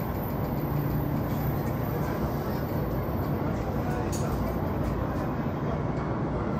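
Train running noise heard from inside the carriage as it pulls alongside a station platform: a steady rumble with a low hum.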